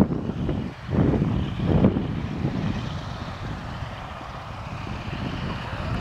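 Stearman biplane's radial engine running at low power as it taxis, its propeller turning over. Louder surges of low rumble in the first two seconds, then a steadier run.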